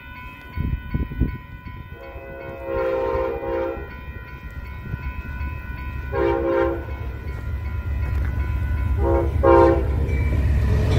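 Amtrak GE Genesis locomotive's air horn sounding a series of blasts as the train approaches: a long blast about two seconds in, a shorter one near the middle, then two quick short blasts near the end. Under them the train's rumble grows steadily louder, and a couple of low thumps come about a second in.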